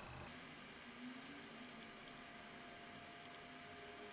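Near silence: faint room tone with a light hiss and a thin, steady high whine.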